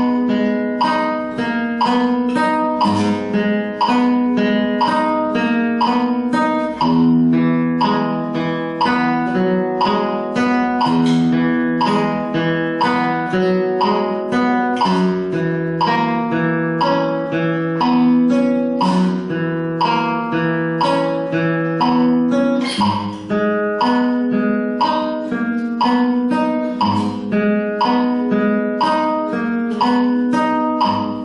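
Flamenco guitar playing the main arpeggio of a rumba slowly, one plucked note after another at an even pace.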